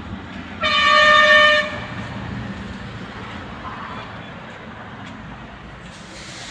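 A vehicle horn sounds once, a steady single-pitch blast of about a second, starting shortly after the beginning, over low steady background noise.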